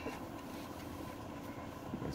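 Steady, fairly quiet hum of a Bombardier Global Express cockpit's running systems on the ground, with faint constant tones and no change in pitch.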